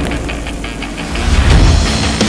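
Low mechanical rumble of a heavy forging press working a red-hot steel ingot, swelling loudest about a second and a half in, under background music.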